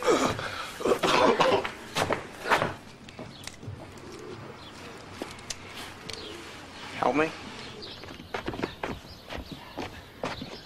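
A person laughing briefly and breathing in the first two to three seconds. One spoken word comes about seven seconds in, then scattered small knocks and shuffling.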